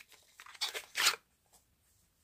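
Two faint, brief rustling sounds of a small product box and its contents being handled.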